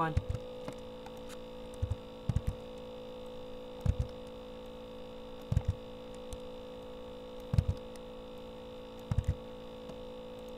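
Steady electrical hum with short soft clicks every second or two, often in quick pairs, from a computer mouse being clicked while editing on screen.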